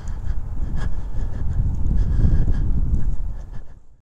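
Wind buffeting the microphone, an irregular low rumble that fades out near the end.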